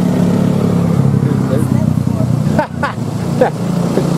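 A motor vehicle's engine running close by, a steady low drone that eases off about two and a half seconds in.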